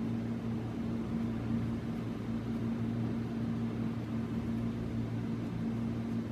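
Steady low hum over a faint even hiss, the unchanging background noise of the room; the crochet work itself makes no distinct sound.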